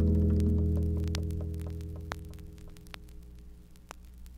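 Closing chord of a soft-rock song, played from a vinyl record on a Dual turntable, fading away over about three seconds. It leaves faint surface hum and scattered clicks and pops from the stylus in the groove.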